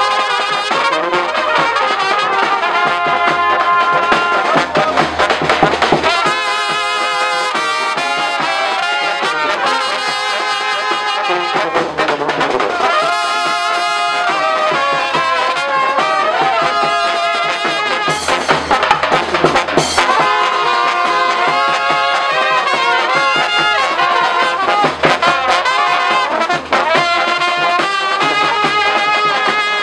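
Brass band of trumpets and larger horns playing a lively tune, with hands clapping along.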